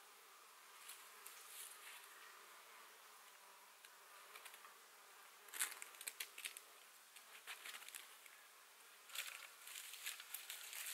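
Very quiet ambience with the faint buzz of a flying insect. Two short spells of crisp rustling, about halfway through and again near the end, as dry wood shavings and kindling sticks are handled at a small fire lay.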